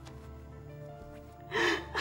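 Soft, sustained background music, then about one and a half seconds in a woman lets out a short, loud sobbing gasp as she cries.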